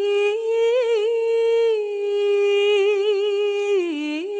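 A single voice singing a slow, ornamented melody: long held notes with wavering pitch and small turns between them.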